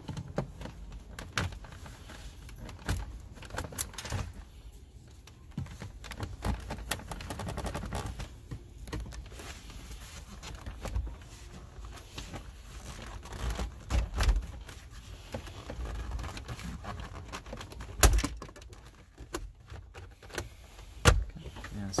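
A plastic trim pry tool worked against a car's centre-console trim panel: scattered clicks and knocks of plastic on plastic as the panel is prised from its sides, with a sharper knock about 18 seconds in.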